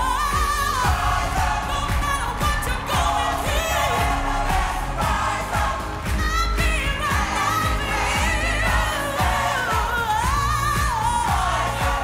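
Female lead singer of a choir singing a slow, soaring melody with long held and sliding notes, over the choir and backing music with a steady deep bass.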